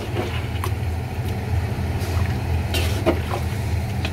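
A metal spoon scraping and knocking against a large aluminium pot as chunks of raw marinated beef are stirred, a few separate clinks, over a steady low mechanical hum.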